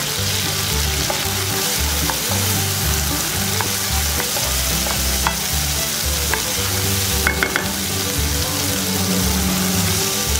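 Minced garlic and fermented soybean paste sizzling in hot oil in a wok, a steady hiss, as a wooden spatula stirs them with a few light knocks against the pan.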